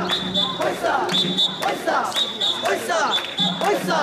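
Festival shrine (mikoshi) bearers chanting and shouting together while clapping their hands in rhythm, with a high whistle-like tone sounding in short blasts about once a second.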